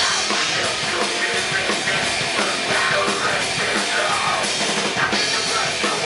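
Heavy metal band playing live: drum kit with bass drum, and electric guitars.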